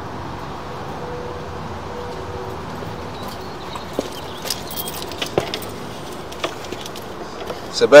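Sewer-inspection camera push cable and reel being worked, making a scatter of light metallic clicks and knocks from about halfway in over a steady background hum.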